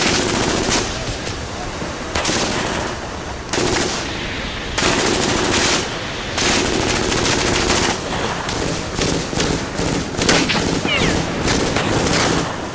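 World War II machine-gun fire in repeated bursts of about a second each, over a continuous background of battle gunfire.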